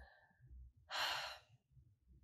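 A woman's single short breath, about half a second long, a second in; otherwise near quiet.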